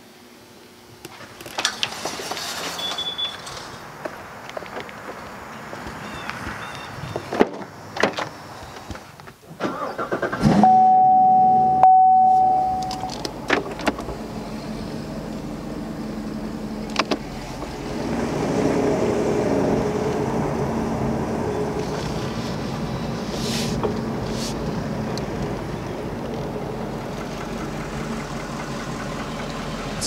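Sixth-generation Chevrolet Camaro heard from the cabin. Clicks and knocks come first. About ten seconds in there is a loud burst with a high steady tone for a couple of seconds, and then the engine runs steadily with a low hum.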